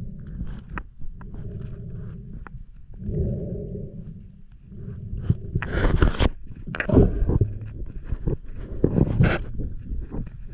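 Muffled underwater sound from a camera held in the water: a steady low rumble of water moving past it, with three louder rushing bursts about six, seven and nine seconds in.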